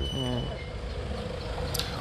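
A brief bit of speech at the start, then a steady low background rumble with a faint steady hum.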